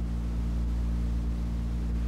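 Steady low hum with a constant hiss, the background noise of an old lecture tape recording, heard in a pause between spoken phrases.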